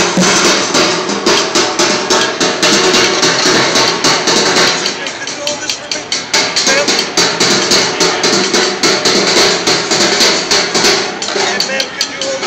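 Street drummer playing upturned plastic five-gallon buckets and metal pans with drumsticks: fast, dense strikes that ease briefly about halfway through, then pick up again.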